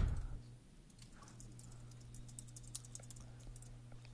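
Computer keyboard being typed on: a quick run of faint, light key clicks lasting a couple of seconds, over a steady low hum.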